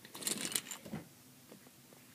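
Hands moving small plastic toy figures and a plastic toy car across carpet: soft scuffing and rustling with small clicks in the first second, then only faint ticks.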